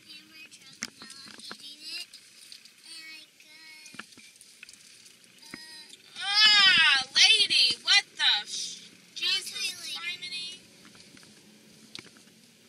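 A young child's high-pitched wordless singing, its pitch sliding up and down in arcs, loud for about two seconds in the middle, with a fainter bit of it after. Before it come soft scattered clicks and rustles.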